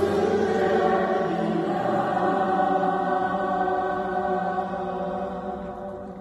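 Mixed amateur choir singing in close harmony, holding a long chord that slowly fades toward the end.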